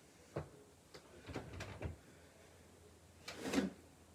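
Someone rummaging in an open drawer of a chest of drawers: a knock about half a second in, a run of clattering handling noise, then a louder drawer noise near the end.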